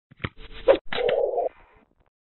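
Short intro sound effect for the channel logo: a click, a brief louder burst, then a dull sustained sound of about half a second that stops abruptly.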